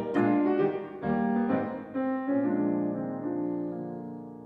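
Solo piano playing a short passage between sung phrases: chords struck roughly once a second, each left to ring, the last fading away near the end.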